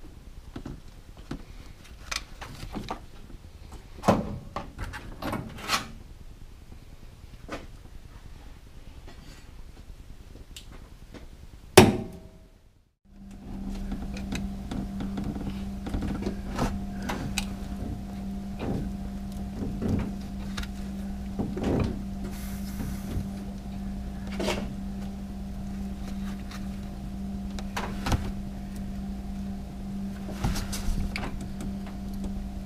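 Irregular metal clicks and knocks of hand work on a V8's timing chain set, with one loud knock about twelve seconds in. After a brief gap, a steady low hum runs underneath the continuing clicks.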